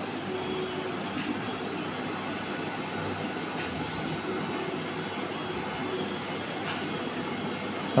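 Pen-style permanent-makeup tattoo machine buzzing steadily while it is worked along an eyebrow.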